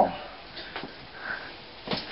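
A single short knock near the end, a wooden spoon striking a pan on the stove, over faint room noise.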